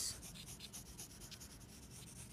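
Faint scratching of a pencil on paper as it draws a curved line, a run of short strokes.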